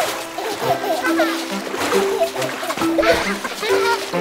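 Splashing water sound effects over an upbeat children's music backing with a steady bass line, with short wordless child vocal sounds mixed in.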